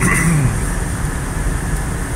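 Steady in-cabin road noise of a Toyota Camry driving along: a low rumble of engine and tyres, with a faint thin high tone over it.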